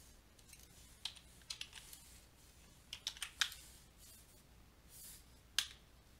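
Faint, irregular clicks and key taps on a computer keyboard and mouse, in small clusters, with one sharper click near the end.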